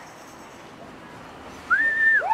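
Low crowd murmur, then near the end a single high whistle that swoops up, holds briefly and falls away, much louder than the murmur.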